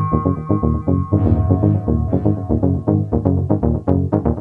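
Electronic music: fast, evenly pulsing synthesizer notes over a heavy bass line. A held high tone fades out about a second in, and bright, hissy percussive hits come in.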